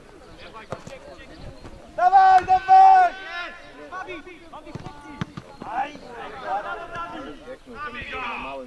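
Men shouting out over the play of a football match: a loud, drawn-out call about two seconds in, then several voices calling over one another near the end.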